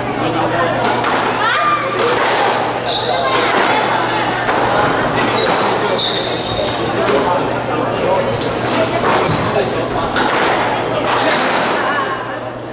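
A squash ball being hit back and forth in a rally: sharp racket strikes and thuds of the ball off the court walls, echoing in the hall, with short high squeaks of sports shoes on the wooden floor.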